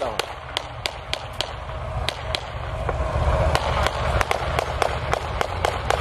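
Irregular small-arms gunfire: single shots and short strings of cracks, some sharper and some fainter, spaced unevenly, over a low rumble that grows from about halfway through.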